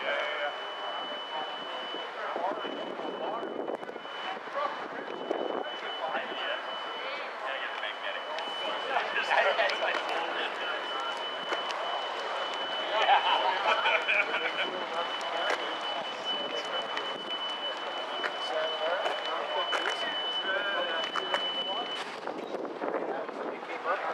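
Indistinct chatter of several people talking at a distance, with no clear words. A thin, steady high-pitched tone runs through most of it, briefly dropping out once.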